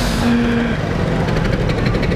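City street traffic noise: a steady rumble of passing vehicles, with a short steady hum in the first part.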